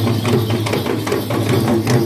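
Traditional Sri Lankan procession drums beaten in a fast, even rhythm of about five strokes a second, over a steady low hum.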